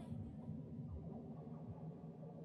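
A break in an electronic hip-hop beat where the music has dropped out: near silence with only a faint low rumble.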